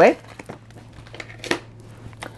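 Oracle cards being handled and shuffled over a table: light rustling and a few soft clicks of card on card, over a faint steady low hum.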